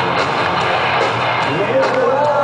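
A heavy metal band playing live with electric guitars, heard from within the crowd.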